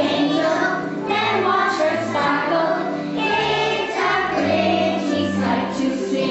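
A group of young children singing a song together, with steady held low notes of instrumental accompaniment underneath.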